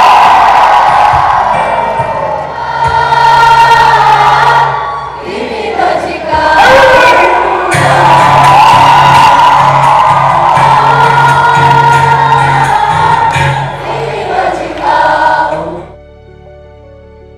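Loud live band music with a singer over a steady bass line, and the audience singing along, heard from within the crowd.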